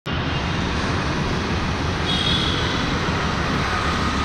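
Royal Enfield motorcycle engine running steadily under way in slow traffic, a low rumble heard from the rider's seat, with a faint high tone briefly about two seconds in.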